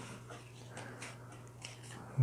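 Faint handling of box-board pieces and tape: a few light ticks and rustles over a steady low hum.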